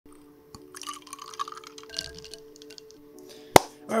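A drink being handled in a plastic cup: light drips, plops and small clinks of liquid and glass, with a faint steady tone underneath. Near the end comes one sharp knock as the cup is set down on the desk.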